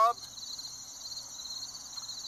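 Steady, high-pitched chirring of insects in the grass, a continuous chorus that runs on without a break.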